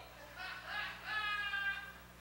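Audience laughing, with one higher-pitched voice standing out about a second in.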